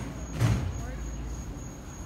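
Outdoor street ambience: a low steady rumble of traffic with faint voices, and a brief louder swell about half a second in.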